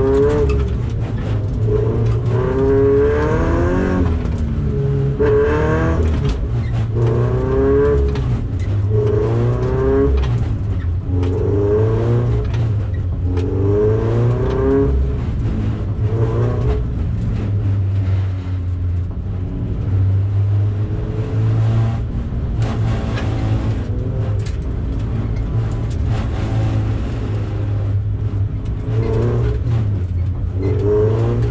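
Toyota 86 (ZN6) 2.0-litre FA20 flat-four engine heard from inside the cabin. Its revs climb and drop in repeated short pulls of a second or two through the first half, run steadier in the middle, and climb again near the end, under a constant low cabin drone.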